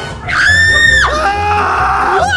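A high-pitched scream held for just under a second near the start, followed by lower voice sounds, over background music with a steady low beat.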